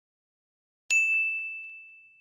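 A single bright bell ding, a notification-style sound effect accompanying the subscribe-button animation. It is struck about a second in and rings away over about a second and a half.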